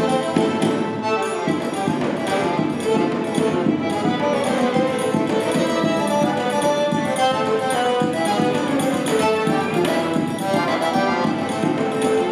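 Live instrumental forró: a string quartet (two violins, viola, cello) and an accordion playing together, with zabumba and triangle keeping the beat.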